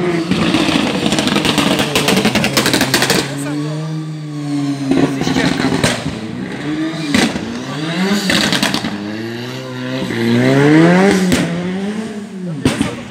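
Ford Sierra rally car engine revving hard, its pitch climbing and dropping again and again through gear changes as it drives the stage. There is a rapid crackle during the first three seconds, and the car is loudest about eleven seconds in.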